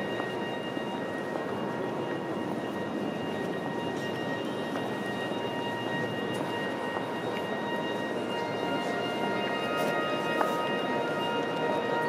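Steady, echoing murmur of many visitors moving and talking in a vast stone cathedral nave, with a few faint footstep ticks and a faint steady high-pitched whine.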